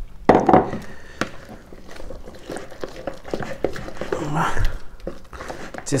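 Thick pumpkin cake batter being stirred by hand in a plastic mixing bowl: irregular soft scrapes and taps as melted butter is worked into the dough.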